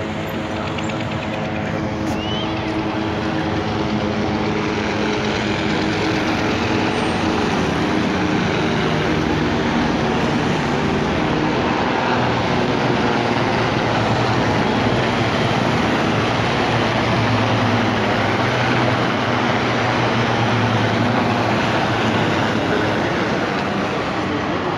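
A formation of military helicopters flying low overhead: a continuous rotor and turbine noise that builds over the first few seconds and stays loud, with a deep hum strongest in the second half as the nearest helicopter passes above.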